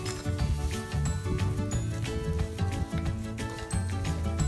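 Background music with a bass line and a regular percussive beat.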